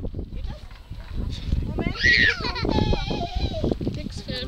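Young grey seal calling from its transport cage as it is carried, one bleating wail about halfway through that rises and falls, trailing off lower, over the knocking of the cage being handled.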